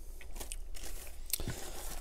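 Paper sandwich wrappers crinkling softly and small taps as wrapped fast-food chicken sandwiches are handled and set down on a wooden board, with one sharper click about a second and a half in.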